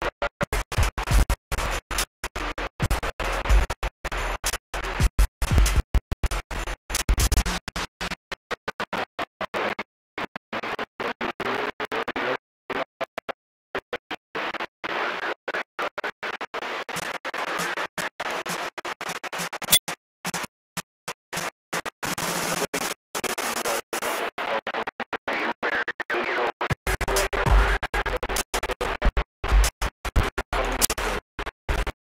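Choppy radio audio that cuts in and out many times a second, with a near-silent gap about halfway through and a wavering tone in its later part.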